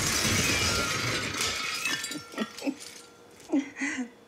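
A loud shattering crash, glass and debris breaking in a fight scene, that fades out over about a second and a half. Short snatches of dialogue follow near the end.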